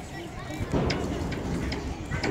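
Wind noise on the microphone, heard as a low rumble that grows stronger partway through, under faint voices.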